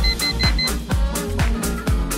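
Upbeat electronic dance music with a steady beat of about four kicks a second. Right at the start, an interval timer gives four quick high beeps, marking the end of a work interval and the switch to rest.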